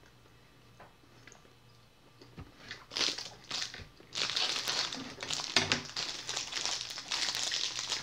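Thin plastic snack-cake wrapper crinkling as it is handled and pulled open, starting about three seconds in and running almost without a break from about four seconds on.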